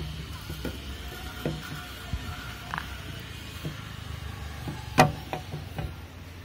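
Pliers gripping and working a tight plastic windshield adjustment knob, with a few faint clicks and one sharp, loud click about five seconds in, over a steady low background hum.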